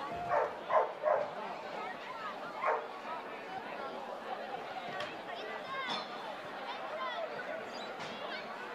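Spectators chatting around a football ground at half-time, with a dog barking four times: three quick barks in the first second and a half, then one more shortly after.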